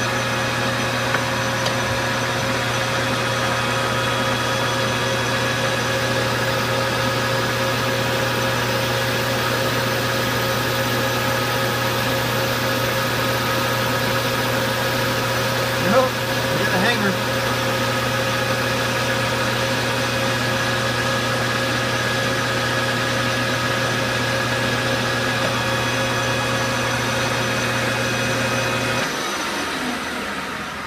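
Metal lathe running steadily, its motor and gears giving a constant hum and whine while it turns down an aluminium handle. About a second before the end it is switched off and the whine falls away as the spindle spins down.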